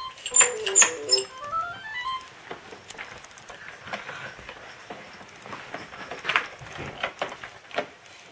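Children's electronic activity table with toy piano keys playing a quick jingle of stepped beeping notes that run up and down in scales and stop about two seconds in. Hands clack on its plastic buttons and keys all through.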